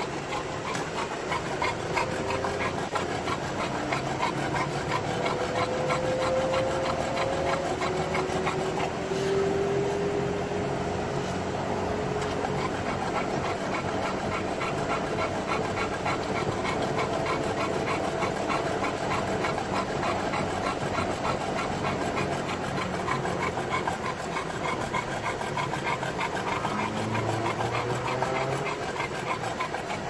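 Olde English Bulldog panting heavily and steadily in a fast, even rhythm, over the car's engine and road noise, which carries a few slow rising tones.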